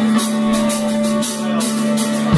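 Live rock band playing: drum kit with repeated cymbal hits over a steady held low note.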